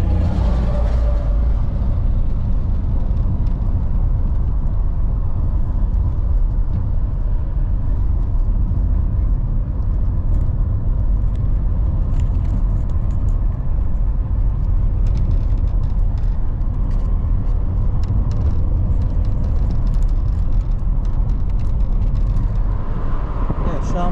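Car driving slowly on a dirt road, heard inside the cabin: a steady low rumble of tyres and engine, with scattered small ticks from the road surface in the second half.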